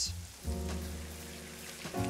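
Chunks of raw lamb sizzling as they go into a hot pot of caramelised onions, with soft background music holding steady notes.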